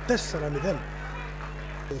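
A man's commentary voice in the first second, then a steady low buzzing hum for about a second, the hum running constantly beneath the voice.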